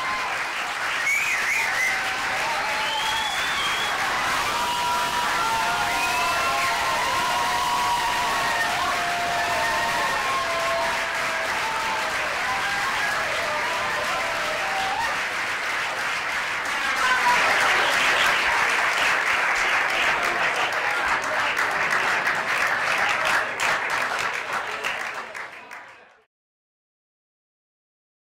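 Audience applauding, with voices calling out over the clapping in the first half. The applause grows louder about two-thirds of the way through.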